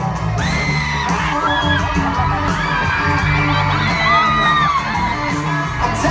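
Live pop band playing with a steady, heavy low end, under high-pitched screams and whoops from a concert crowd.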